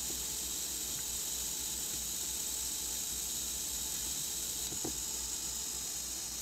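Small Faulhaber geared DC motor running under Arduino control, heard as a quiet steady hiss with a faint low hum and a few faint ticks. It turns back and forth, reversing each time its optical encoder counts 1800.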